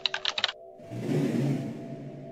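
Keyboard-typing sound effect: a quick run of about seven clicks in the first half second, then a whoosh that swells and fades. A steady music drone plays under both.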